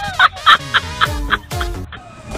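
Comic sound-effect track: short clucking, gobble-like squawks about four a second over background music, with a couple of deep drum hits near the end.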